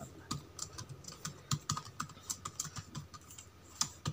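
Typing on a computer keyboard: an irregular run of keystroke clicks.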